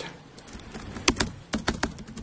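Laptop keyboard being typed on: a handful of separate key clicks, coming closer together in the second half.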